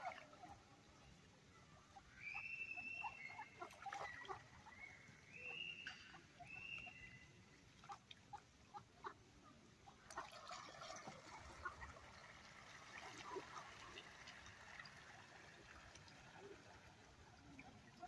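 Faint sounds of a flock of mallard ducks on a pond: soft splashes and quiet short calls from the water. A few high whistling notes come a few seconds in.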